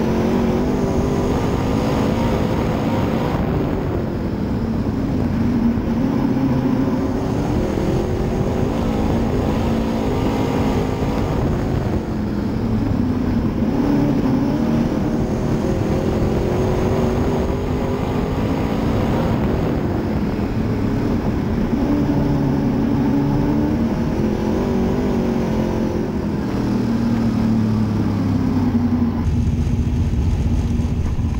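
Super Late Model dirt race car's V8 engine heard from inside the cockpit, running at low speed with its pitch gently rising and falling as the throttle comes on and off. Near the end the engine note settles lower.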